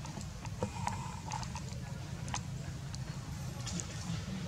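Outdoor background noise: a steady low rumble with scattered light clicks and ticks.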